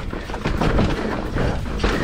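Mountain bike descending a loose dirt trail at speed: steady tyre noise on loose dirt with a run of quick knocks and rattles as the bike goes over bumps, the sharpest one near the end.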